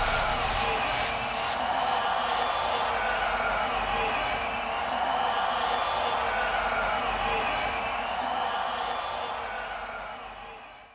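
Large crowd cheering and chattering, with no music. The crowd noise fades out near the end.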